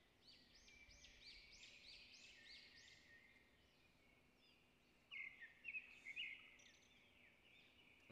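Faint background birdsong: a quick run of repeated high chirps, then a few louder short chirps about five seconds in.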